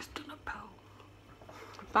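A woman whispering briefly, with a hand cupped to her mouth, in the first half second or so. A loud spoken "bye" starts right at the end.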